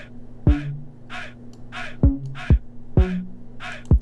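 A hip-hop beat playing back from a computer: deep kick hits that fall in pitch, sharp snappy hits about twice a second, and a short synth bass figure of a few low notes over a steady held tone.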